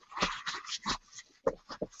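A crumpled paper towel rubbed quickly to wipe something clean: a run of short scuffing strokes, then a few light knocks near the end.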